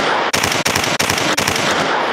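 A burst of automatic gunfire, a machine-gun sound effect. Loud rapid rattling with sharp cracks about three times a second, dying away near the end.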